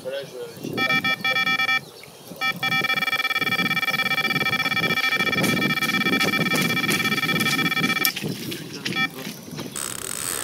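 Electronic carp bite alarm giving a fast string of beeps as line is pulled off the rod: a run, with a carp taking line. A short burst of beeps about a second in, then an unbroken run of rapid beeps for about five seconds that stops about eight seconds in, and a brief blip near the end.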